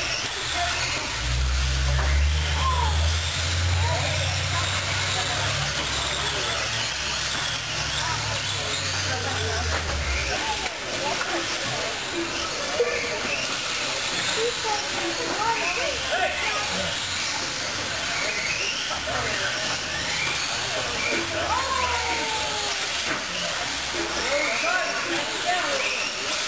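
Electric 1/10-scale RC off-road buggies and trucks racing on a dirt track: many short motor whines rising and falling as the cars accelerate and brake, over a steady hiss, with a low rumble for about the first ten seconds.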